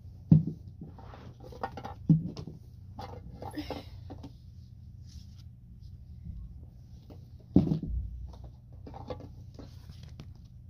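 Books and paper booklets being picked up and handled on a floor: three sharp knocks and thuds as books strike each other or the floor, the loudest about seven and a half seconds in, with rustling and small clicks between, over a steady low hum.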